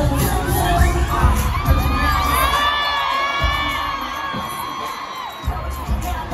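Stadium concert crowd screaming and cheering, many high-pitched voices over amplified pop music. The bass beat drops out about two seconds in while the screaming carries on, and the beat comes back near the end.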